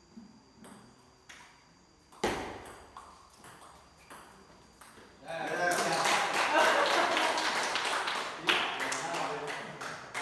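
A table tennis ball clicks a few times off paddle and table, with a sharp, loud hit a little over two seconds in. From about halfway, the players and onlookers break into loud talk and laughter, with a few more clicks mixed in.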